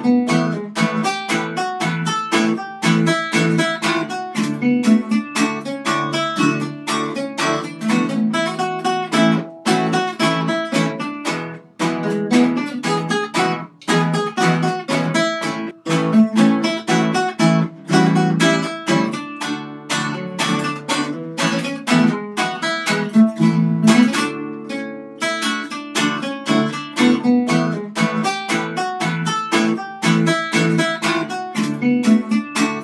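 Instrumental plucked string music led by acoustic guitar: fast picked notes over a steady chordal accompaniment, with no singing, broken by a few brief pauses in the middle.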